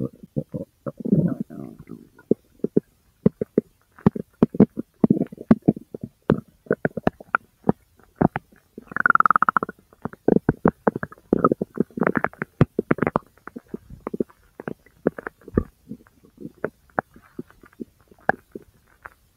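Large-intestine gurgling: a rapid, irregular run of short pops and gurgles, with one longer, higher squealing gurgle about nine seconds in.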